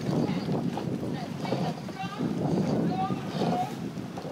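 Several indistinct voices shouting over one another, over steady wind noise on the microphone.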